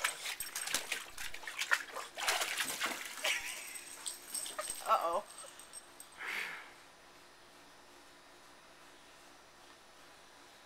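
A Boston terrier splashing and sloshing with its paws through shallow water in a plastic kiddie pool, in quick wet splashes for the first few seconds. About five seconds in comes one short high-pitched call that bends in pitch.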